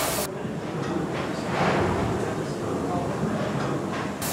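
Hawthorn Davey triple-expansion steam pumping engine running: a steady, dense mechanical clatter, dull and muffled with the top end missing.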